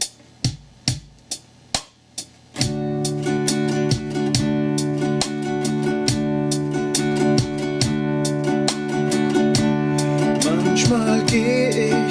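Nylon-string classical guitar strummed in chords over a steady drum-machine beat played back by a Boss RC-30 looper. The beat runs alone for the first couple of seconds before the guitar comes in, and a man starts singing near the end.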